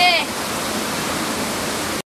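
Steady rushing of stream water, an even noise that cuts off suddenly at the end.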